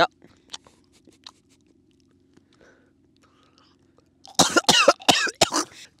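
A man coughing: a fit of several quick, harsh coughs near the end, after a few seconds of near-quiet with only faint small ticks.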